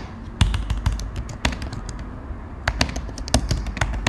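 Typing on a computer keyboard: irregular key clicks as a short sentence is typed, with a pause of about a second around the middle.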